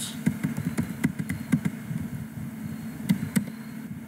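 Computer keyboard typing: a quick, irregular run of key clicks as an IP address is entered, over a steady low hum.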